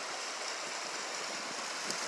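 Steady rushing of river water running through rapids, an even hiss without breaks.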